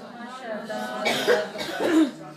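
A person coughing a few times in the second half, short sharp coughs with faint talking underneath.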